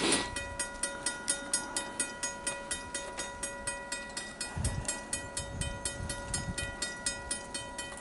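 Railroad grade-crossing warning bell ringing steadily in rapid, even strokes as the crossing signals are activated for an approaching train. A low rumble joins in about halfway through.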